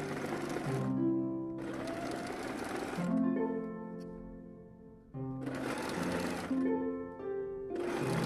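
Domestic electric sewing machine stitching in short runs of a second or so, with a pause of about two seconds in the middle, over background music of plucked notes.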